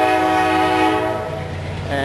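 Diesel locomotive air horn sounding one long, steady chord that fades out a little over a second in, over the low rumble of freight cars rolling past.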